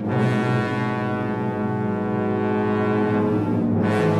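Symphony orchestra holding one loud, sustained low chord, which cuts off shortly before the end.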